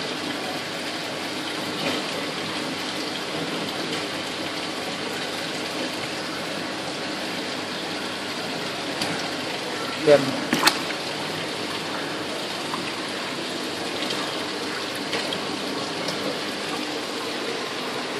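Steady rush of running water, with a short spoken phrase and a sharp click about ten seconds in.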